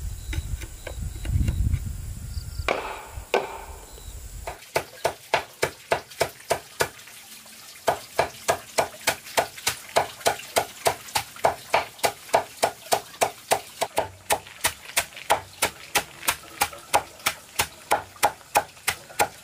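A machete chopping leafy greens against a wooden block: quick, regular knocks about three a second, with a short pause a few seconds in. Before that, at the start, there are a few low thumps.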